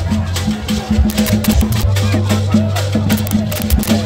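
Live traditional drumming with hand rattles, a fast, steady percussive beat. Voices singing or calling rise over it in the second half.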